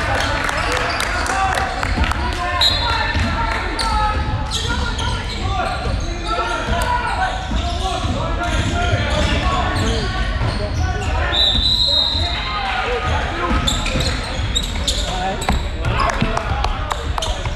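Basketball game on a hardwood court in a large echoing hall: the ball bouncing, sneakers giving short squeaks on the floor a few times, and background chatter and calls from players and spectators.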